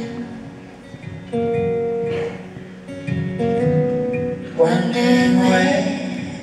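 Acoustic and electric guitar playing a slow folk song live, with long held notes, between sung lines. The music swells louder a little past four and a half seconds in.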